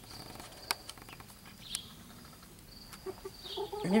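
Hens giving a few quiet, soft clucks, with two sharp ticks about a second and nearly two seconds in. A faint, thin, high insect trill comes and goes in the background.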